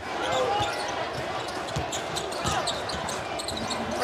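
A basketball bouncing on a hardwood court: several separate dribble thumps over the murmur of background voices in a large arena.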